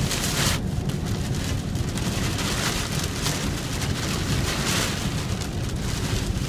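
Heavy rain and hail pelting the truck's roof and windshield, heard from inside the cab as a dense hiss full of small ticks, over the low rumble of the truck driving. The hiss surges briefly right at the start.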